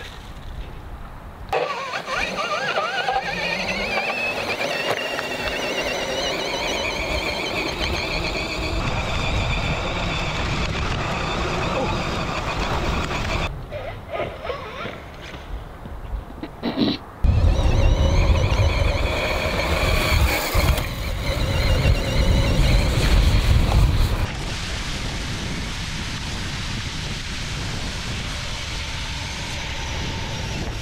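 Large brushless electric motor driving an ATV tire through a chain, whining and climbing in pitch as it spins up, then holding, over ground and wind noise. The sound breaks off briefly about halfway through, then a louder low rumble runs for several seconds before settling into a steadier noise.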